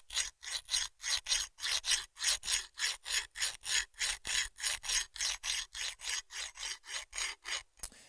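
Coarse 220-grit diamond plate of a hand-held Work Sharp Guided Field Sharpener filed back and forth along a hatchet's steel edge. It makes a steady run of short rasping strokes, about three to four a second, which stop just before the end.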